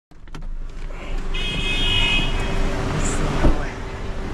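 Busy road traffic heard from a car at the kerb, with a steady low engine hum. A high-pitched tone sounds for about a second, and a sharp thump comes near the end.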